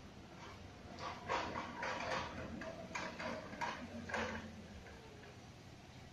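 Footsteps on paving: about six soft scuffing steps, roughly half a second apart, in the first two-thirds, over a low steady background hum.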